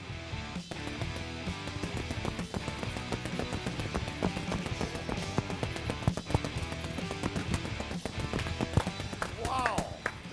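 A fast, continuous flurry of boxing-glove punches thudding on a heavy punching bag, over background music.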